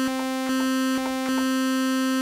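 A single held note from a Korg Kronos AL-1 initialized patch layered across several timbres: a steady buzzy tone rich in overtones. Small clicks and slight level changes come every half second or so as the layered timbres are switched off and on to check their phase alignment.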